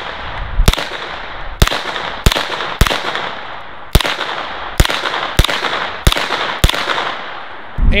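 Uzi 9mm short-barreled rifle fired in slow, single shots, nine in all, spaced about half a second to a second apart, each crack followed by a short fading echo.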